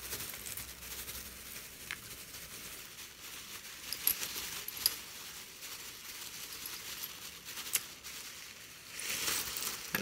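Broken glass poured slowly from a plastic bag onto a tray: the bag crinkles faintly while glass shards rattle down, with a few sharp clinks and a louder rustle near the end.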